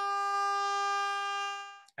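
A 400 Hz sawtooth wave synthesised in Faust: a steady buzzing tone, rich in harmonics, that fades out near the end as its gain slider is pulled down.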